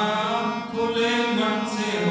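A devotional song sung into a microphone over sustained harmonium notes, in a slow chant-like style.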